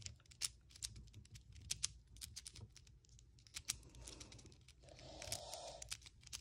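A very small GAN 3x3 speedcube being turned by hand: faint, irregular plastic clicks of its layers turning, several a second.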